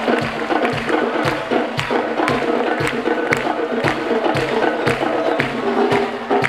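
Live band playing an upbeat song with a steady beat about twice a second, with sharp hand-percussion and timbale hits prominent over the band.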